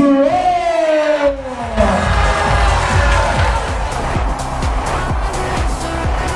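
A ring announcer's long drawn-out shout into the microphone as he announces the result, then a crowd cheering over loud music with a steady beat from about two seconds in.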